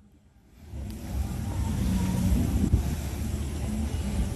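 Steady low rumble of outdoor background noise, wind on the microphone and distant street traffic, fading in from near silence within the first second.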